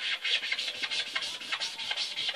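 Rapid, irregular rubbing and scratching strokes on a hard tabletop.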